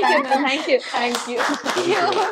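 A small group of people clapping their hands together, with several voices talking over the applause.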